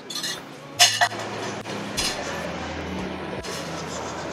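Glassware and cutlery clinking at a café table: a sharp clink just under a second in, another about two seconds in, then fainter ones over a steady low background.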